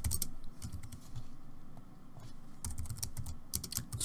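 Computer keyboard typing: quick runs of keystrokes, thinning out for about a second and a half in the middle before picking up again.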